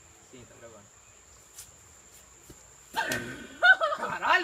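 Young men's voices: faint talk in the first second, then loud talking and laughing break out about three seconds in, over a steady high insect buzz.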